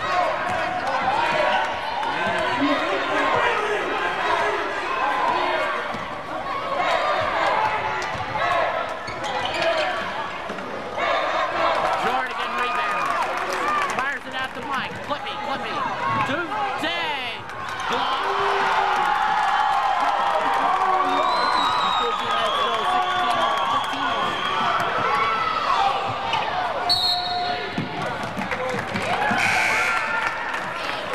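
Basketball game play in a gym: the ball bouncing on the hardwood court amid players' and spectators' voices and shouts, continuous throughout.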